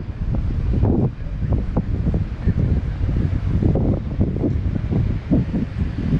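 Wind buffeting the microphone in uneven gusts, a dense low rumble, with road traffic underneath.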